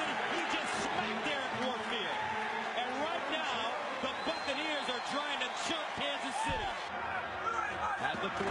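Football stadium crowd noise: a steady din with many voices shouting and calling over one another.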